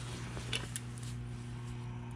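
A steady low hum, the background tone of the engine room, with a couple of faint clicks about half a second in.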